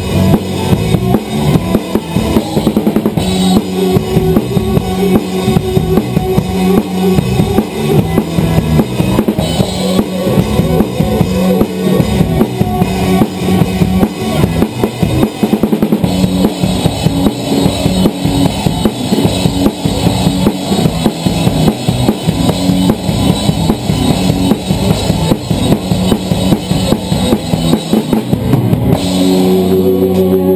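Rock drum kit played hard in a fast driving beat, with kick drum, snare and Zildjian cymbals, over a live band with bass guitar. The drumming stops about a second before the end while the band's chord rings on.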